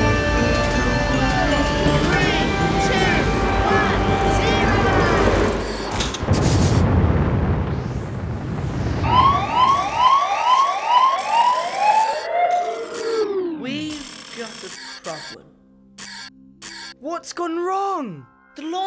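Cartoon launcher sound effects over music. A rushing whoosh is followed by a run of warbling electronic chirps, about two a second, that end in a long falling glide, with scattered electronic blips near the end.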